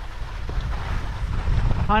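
Wind buffeting an action-camera microphone during a fast downhill ski run, with the steady hiss of skis sliding over snow.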